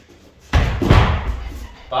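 Taekwondo kicks landing on a hanging heavy punching bag: a sudden loud thud about half a second in, a second hit around a second, then the sound dying away as the bag swings.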